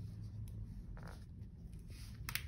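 Faint handling of a hardcover picture book as a hand takes hold of its cover to open it. There is a short brushing slide about a second in and a couple of light taps.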